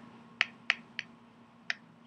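Chalk tapping against a chalkboard: four short, sharp taps, three in quick succession and a last one about a second later.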